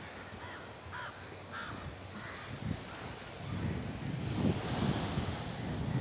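A bird calling in four or five short calls in the first two seconds or so, over low wind noise on the microphone that grows louder from about three and a half seconds in.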